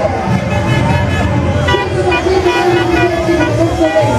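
Publicity-caravan vehicles passing, with a horn or siren sounding a slow wailing tone that slides down in pitch and rises again near the end.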